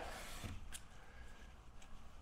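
Plastic squeegee faintly rubbing over wet window film on glass, with a light tick about three quarters of a second in.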